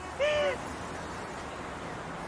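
A single short hoot, rising then falling in pitch, about a quarter second in, over a steady rushing noise.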